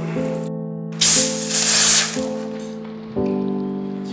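A plastic bottle of carbonated drink twisted open, releasing a loud hiss of escaping gas about a second in that lasts about a second, over background music of held chords.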